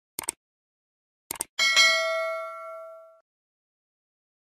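Sound-effect mouse clicks, two quick pairs, then a single bell ding that rings out and fades over about a second and a half.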